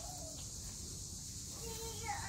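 Steady high-pitched drone of a summer insect chorus, unbroken throughout, over a low rumble.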